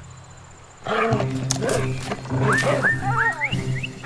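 A cartoon dog's vocal sound effects, a run of pitch-bending yelps and whines that start about a second in and rise higher near the end, over background music.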